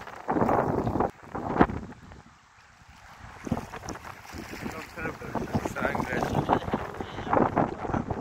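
Water splashing close to the microphone with wind buffeting it, loud for about the first second and once more briefly just after, then dying away.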